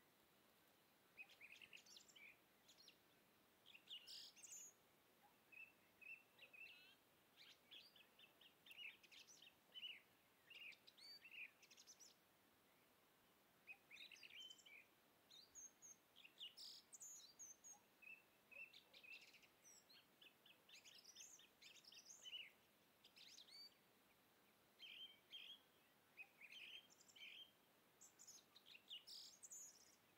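Faint chirping of small birds: many short, high, quick calls in irregular clusters throughout, over a low steady hiss.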